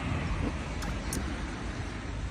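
Road traffic noise on a residential street: a steady hiss over a low rumble, with two faint clicks near the middle.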